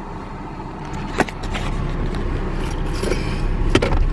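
Steady low rumble of a car heard from inside the cabin, growing a little louder after the first second. A sharp click about a second in and a short tick near the end.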